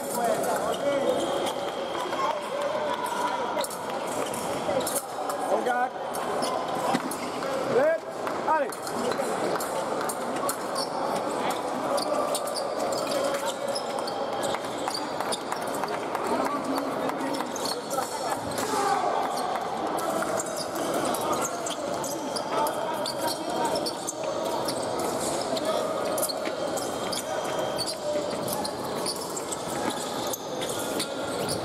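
Busy sports-hall ambience of many indistinct voices, with fencers' feet stamping and thudding on a metal piste and short sharp clicks scattered through.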